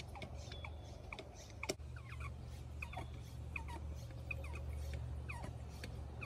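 Birds chirping: many short calls falling in pitch, several each second, over a steady low rumble.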